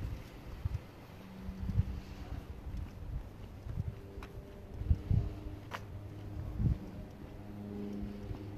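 Street sound recorded on the move along a sidewalk: irregular low thumps of walking and camera handling, a low engine-like hum that comes and goes, and one sharp click a little before six seconds in.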